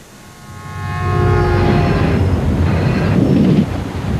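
A deep rumble, typical of a train approaching on the rails, swells up from near silence over about the first second and then keeps going, loud and steady. Commercial music with sustained tones plays over it.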